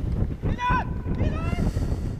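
Men shouting during a football match: two short calls, one about half a second in and another around a second and a half, with wind rumbling on the microphone.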